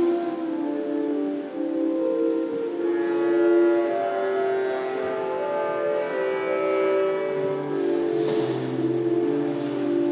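Church pipe organ playing sustained chords, the held notes changing every second or so.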